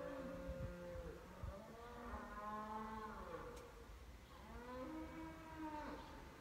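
Faint cattle mooing: a few long moos one after another, each rising and then falling in pitch.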